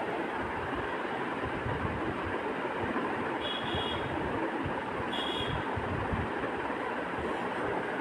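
Loitta (Bombay duck) pieces and masala cooking in a wok, a steady sizzle as the fish starts to release its water into the pan.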